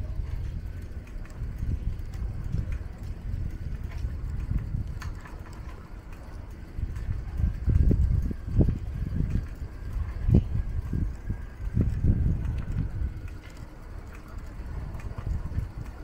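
Low, gusting rumble of wind buffeting the microphone, strongest in uneven surges through the middle, over quiet street ambience with a few faint ticks.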